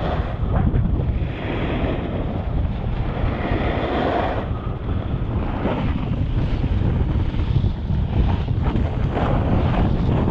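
Wind buffeting the microphone of a camera carried by a moving snowboarder, with the hiss and scrape of snowboard edges sliding and carving over groomed snow, swelling and easing with the turns.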